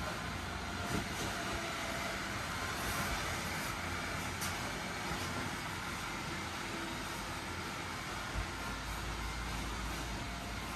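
The inflatable costume's built-in blower fan running steadily, a continuous whir with a low rumble, with a couple of soft knocks as the wearer moves, one about a second in and one near the end.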